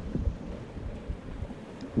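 Low, steady rumble of wind and sea, a stormy ship-at-sea ambience.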